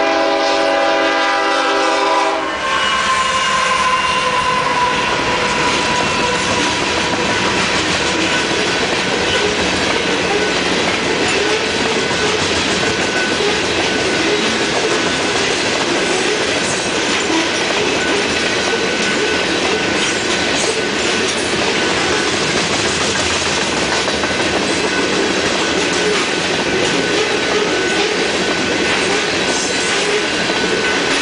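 Freight locomotive horn sounding a chord that ends about two seconds in. The train then runs past: a long string of tank cars rolls by with a steady rumble and clatter of steel wheels on the rails.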